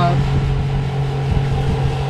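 Spectra watermaker's electric feed pumps running with a steady hum while pressure builds in the system after the pressure relief valve is closed.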